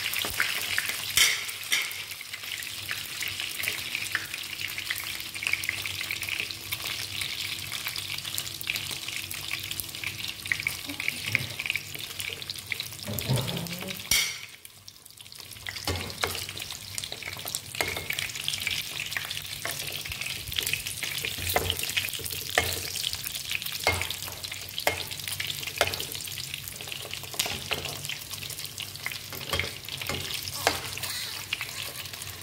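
Sausages sizzling in hot oil in a frying pan, with scattered crackles and the clicks of a perforated metal skimmer turning them in the pan. The sizzle briefly drops away about halfway through, then resumes.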